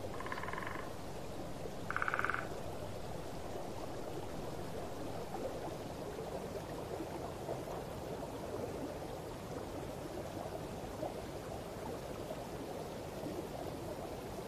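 Frogs calling: two short pulsed calls near the start, about two seconds apart, over a steady rushing background of natural ambience.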